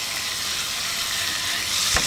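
Barramundi fillets frying in hot vegetable oil in a frying pan, a steady sizzle that swells slightly near the end.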